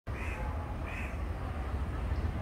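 Two short bird calls, each arching up and down in pitch, a little over half a second apart, over a steady low rumble.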